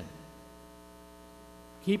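Steady electrical mains hum, a stack of even, unchanging tones, heard in a pause between a man's spoken sentences; his voice comes back right at the end.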